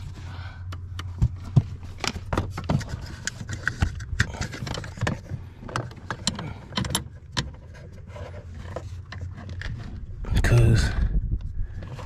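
Scattered small clicks, clinks and rattles of hand work on parts and wiring connectors under a pickup's dashboard, with a louder rustling burst about ten seconds in.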